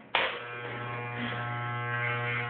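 Electric hair clippers switching on just after the start, then running with a steady buzz.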